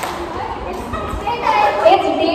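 Voices of a group of young women talking over one another in a large hall, growing louder near the end.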